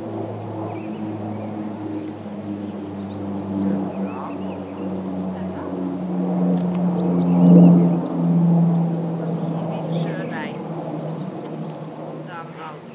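An engine's steady drone with a low pitch that drifts slowly, swelling to its loudest a little past the middle and easing off toward the end.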